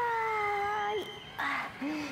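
A woman's voice holding one long, high sung note that slowly slides down in pitch and breaks off about a second in, followed by a short breath and a brief low vocal sound.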